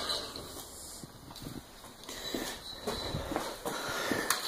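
Faint footsteps and light handling knocks of someone moving with a handheld camera across a concrete garage floor, scattered and soft, more of them in the second half.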